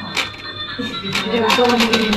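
Quick, irregular plastic clicks and clacks of a tabletop pin-football game as the players work the spring plunger levers and the ball knocks around the pitch, over music.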